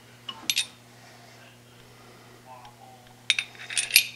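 Light metallic clinks from steel collet-chuck parts being handled: two short clinks about half a second in, then a quick cluster of clicks near the end.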